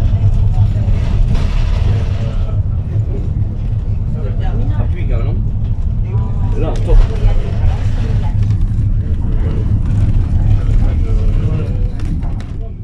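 Steady low engine and road rumble inside a 2022 Iveco minibus under way, with one heavier low knock about seven seconds in.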